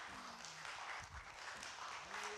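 A congregation applauding faintly in welcome, with a few voices faintly audible under the clapping.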